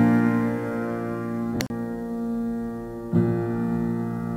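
Slow, sustained piano chords, with a new chord struck about three seconds in and a brief click about halfway through.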